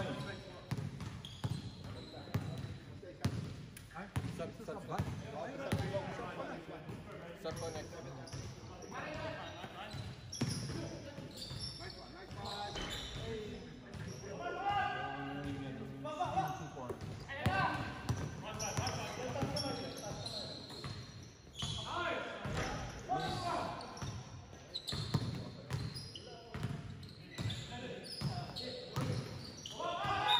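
Basketball bouncing on an indoor court floor during play, with voices calling out among the players.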